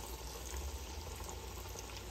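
Falafel patties deep-frying in very hot oil: a steady, quiet sizzle of bubbling oil.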